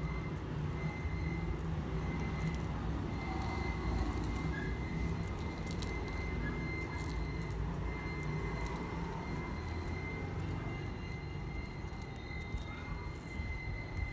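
Faint metallic clinks from the small bell and metal ring on a woven nylon pet collar as the strap is threaded through its buckle, over a steady low background hum.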